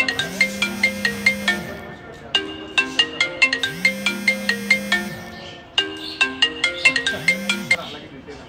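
Mobile phone ringtone: a short marimba-like melody that loops about every three and a half seconds and stops near the end.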